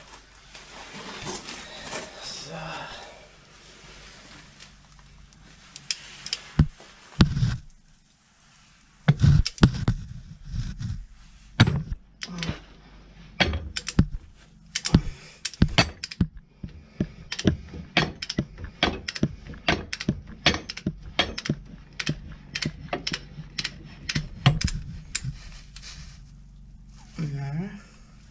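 Ratchet wrench working loose the oil drain plug on a tractor's rear axle final drive: a few heavy knocks, then a long run of sharp clicks, roughly two a second.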